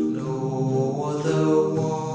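A cappella male vocal harmony: one singer multitracked into four parts, singing a hymn line in held chords that move together about every half second.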